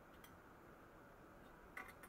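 Near silence with a few faint metallic ticks from a bent open-end wrench working a nut on a pressure lantern's frame: one tick about a quarter-second in and a short cluster of clicks near the end.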